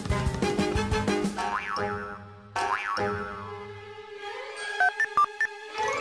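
Cartoon soundtrack: bouncy music with a steady beat, then two springy rising "boing" effects, a held note, and a few short sharp clicks near the end.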